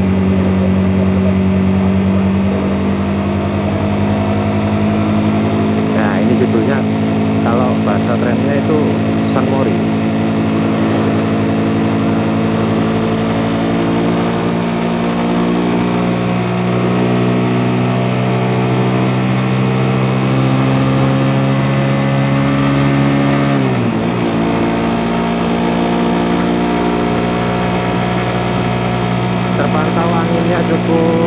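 Suzuki GSX-S150's single-cylinder engine running at a steady cruise, heard from the rider's seat. Its pitch eases down slowly, then dips suddenly about three-quarters of the way through before holding steady again.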